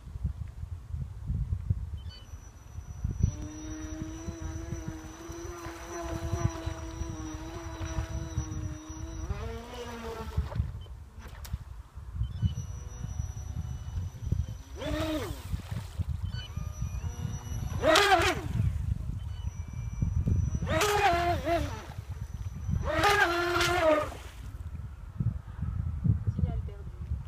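Electric motor of a mini eco RC racing boat whining: a steady pitched tone for about six seconds, then four short throttle bursts that rise and fall in pitch. A constant low rumble runs underneath.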